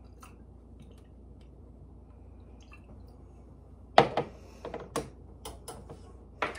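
Liquid dripping faintly from a measuring spoon into the sauce as Worcestershire sauce is added. About four seconds in comes a sharp clink, followed by several lighter clinks of kitchen utensils.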